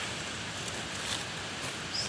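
Steady outdoor hiss with a few faint rustles of dry leaf litter as a hand moves through it close to the microphone.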